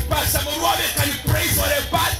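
A man preaching into a microphone, his voice amplified through a loudspeaker, with music playing underneath.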